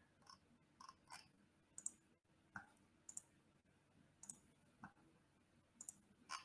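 A few quiet, sharp computer mouse clicks, several heard as quick double ticks, with fainter small ticks between them.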